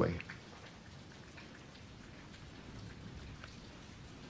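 Faint steady background noise with soft, scattered ticks, after the last syllable of a man's word at the very start.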